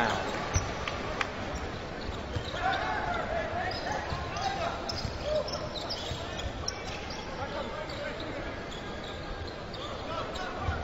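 Live basketball game sound in an arena: a ball dribbling on the hardwood court with scattered short knocks, over a steady crowd murmur and faint distant voices.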